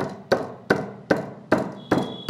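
Steel magneto flywheel rotor being knocked down onto the crankshaft taper over its Woodruff key: six sharp, evenly spaced knocks, about two and a half a second, each with a short metallic ring.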